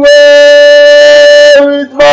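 Background music: a single loud held note, steady in pitch with a reedy, wind-instrument-like tone, breaking off briefly near the end.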